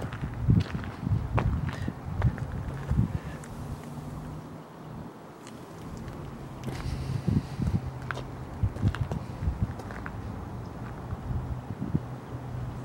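Footsteps on asphalt, irregular and uneven, over a low steady hum.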